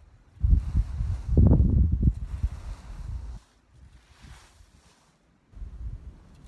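Wind buffeting the microphone in gusts: a strong irregular low rumble for the first few seconds, easing off, then picking up again near the end. Under it, faint rustling swishes of dry straw and leaves being swept.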